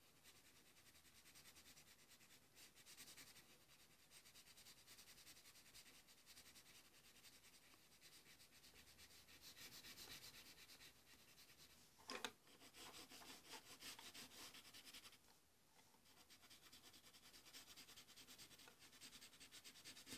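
Faint, steady scratching of a black colored pencil shading on paper, with one brief louder scrape about twelve seconds in.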